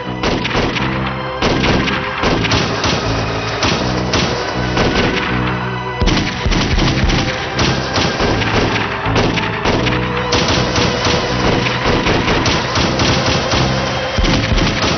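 Rapid gunfire, many shots in quick succession from rifles in a staged firefight, over dramatic background music with held notes.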